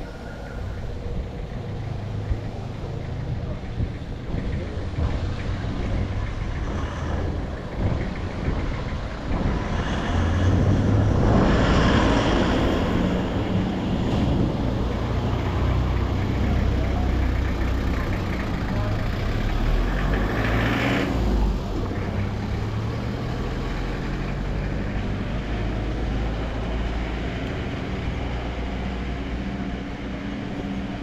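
Street traffic: car and truck engines running with vehicles driving past, a louder pass building around ten to thirteen seconds in and another about twenty seconds in.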